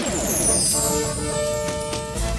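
Cartoon soundtrack with no speech: a falling sweep fades out over a low rumble. Then, under a second in, a chord of steady held tones begins and holds.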